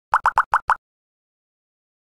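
Electronic audio-logo sound effect: five quick bloops, each rising in pitch, all within the first second.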